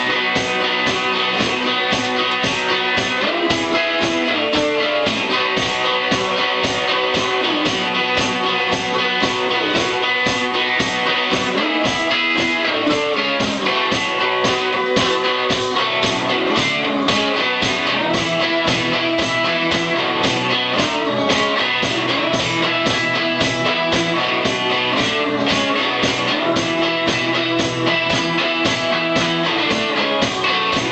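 Live blues rock played on guitars, including a cigar box guitar, over a steady driving beat.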